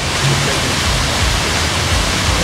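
Steady rushing of water falling down a small rock cascade, with an uneven low rumble underneath.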